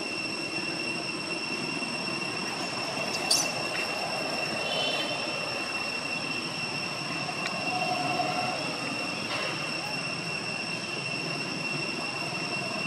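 A steady high-pitched whine over a haze of outdoor background noise, with one sharp click a little over three seconds in.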